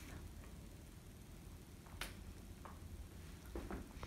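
Quiet room tone with a steady low hum, broken by one sharp click about two seconds in and a few fainter ticks near the end.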